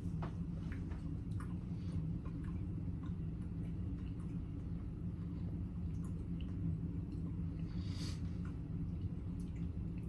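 Faint mouth clicks and wet smacks of people chewing small pieces of gummy bear, over a steady low hum, with a short breathy sound about eight seconds in.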